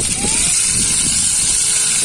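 Fish frying in hot oil in a pan on a portable gas camp stove, a steady high sizzle, with wind rumbling on the microphone.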